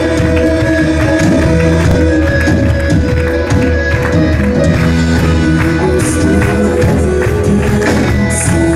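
Live church worship band playing with a steady beat: keyboard, electric guitars and drums.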